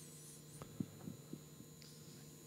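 Quiet room tone with a steady electrical hum from the sound system, a brief faint high whistle at the start and a few soft knocks about a second in.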